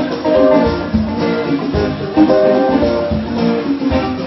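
A live Congolese rumba band playing an instrumental passage: guitar lines over bass and a steady drum beat, with no singing.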